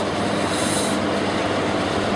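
Steady rushing background noise with no speech, and a brief brighter hiss about half a second in.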